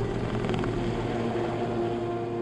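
Sikorsky S-76 helicopter in flight, a steady low rotor-and-engine noise, heard under sustained background music.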